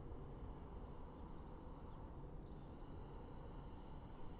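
Quiet outdoor background: a steady low rumble with faint thin high tones and no distinct event.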